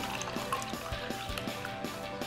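Water pouring from a glass pitcher into a plastic cup, over background music with a steady beat.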